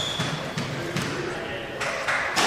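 Spectators talking between points, with a few light knocks of a squash ball bounced on the wooden court floor before the serve and a brief shoe squeak at the very start.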